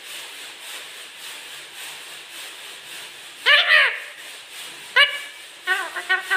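Rose-ringed parakeet calling: one loud call that rises and falls in pitch about three and a half seconds in, a short call at five seconds, then a quick run of short notes starting near the end.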